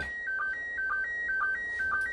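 Slow-scan television (SSTV) picture signal from the International Space Station, received on FM and heard through the radio: a tone stepping between two pitches, with a short lower sync blip about twice a second as each scan line of the image is sent.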